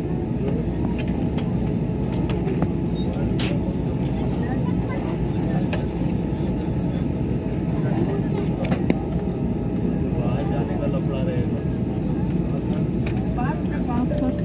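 Steady rumble of a jet airliner's engines and cabin air as heard inside the cabin while the plane taxis.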